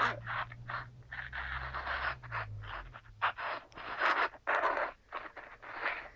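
About a dozen irregular scraping and rustling noises close to the microphone, some short and some drawn out over half a second or more, with a low hum under the first half.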